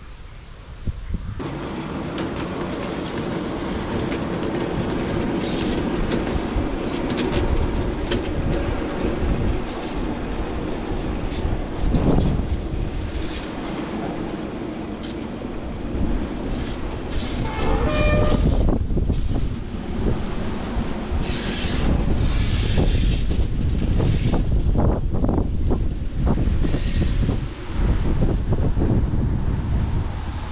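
Solar-powered electric miniature railway locomotive running along the track with its passenger wagons, a steady running noise with the wheels clicking over the rail joints. A short horn toot comes about two-thirds of the way through.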